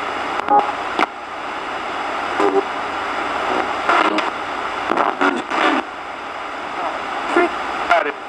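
RadioShack 20-125 radio run as a ghost box, sweeping continuously through stations: a steady static hiss broken by clicks and clipped fragments of broadcast voices.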